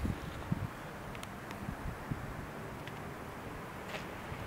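Steady outdoor background noise with low wind rumble on the microphone, and a couple of soft low bumps in the first half-second.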